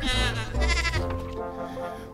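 A goat bleating: two short quavering calls in the first second, over background music.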